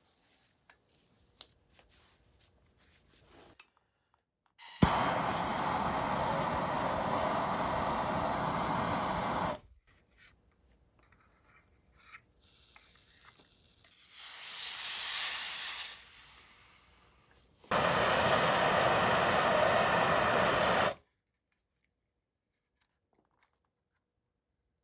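Handheld soldering torch burning steadily as it heats a copper fitting to sweat a solder joint. It runs in two stretches of about five and three seconds, each starting and stopping abruptly, the first opening with a sharp click, with a softer swell of hiss between them.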